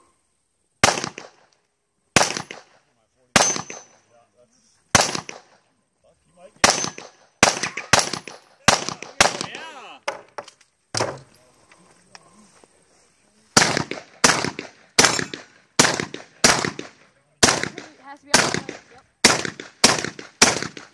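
A stage of gunfire in a practical shooting match. There are well-spaced single shots over the first five seconds, a quicker run of shots around eight seconds, and a few quiet seconds. Then comes a fast string of about a dozen shotgun shots, roughly two a second, running to the end.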